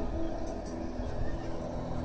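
Film soundtrack playing through a TV soundbar in a gap between lines of dialogue: a low, steady background with a few faint held tones and no words.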